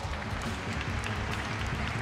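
Arena crowd applauding a won rally, with low background music underneath.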